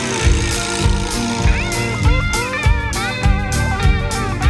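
Blues-rock band playing an instrumental passage: an electric guitar lead with bent, gliding notes over drums and bass.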